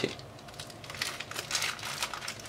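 Soft, irregular scratching and rustling as a spoon scoops and spreads ground cubeb (kabab chini) into herbal powder in a stainless steel bowl, starting about half a second in and getting busier towards the end.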